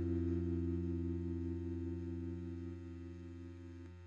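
The song's last chord, held on an electric guitar, ringing out and slowly fading away. A faint click near the end as the upper notes cut off.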